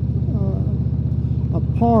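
Touring motorcycle engine running steadily at cruising speed, a low, evenly pulsing drone heard from the rider's seat.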